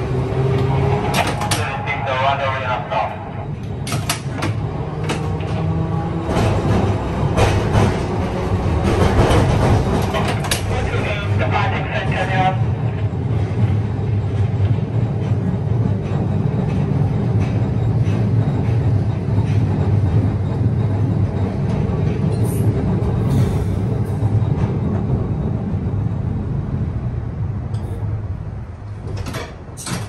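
TECO Line streetcar running along its track, a steady low rumble of motor and wheels heard from inside the front cab, with voices over it through the first twelve seconds and a few short clicks near the end.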